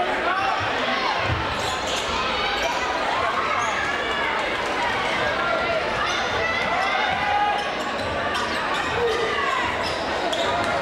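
Sounds of a basketball game in play on a hardwood gym court: the ball dribbling, with overlapping voices of players and spectators.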